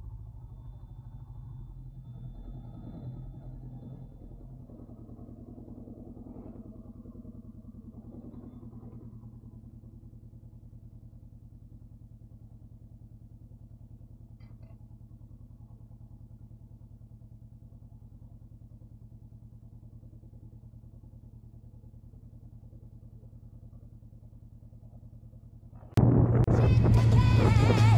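Motorcycle engine running at low revs, uneven for the first several seconds and then settling into a steady idle from about ten seconds in.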